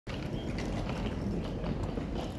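Steady background noise of a large airport terminal hall, with faint irregular taps over it.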